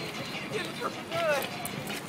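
Men's voices calling out briefly twice, with a few short sharp taps near the end, such as shoes on pavement.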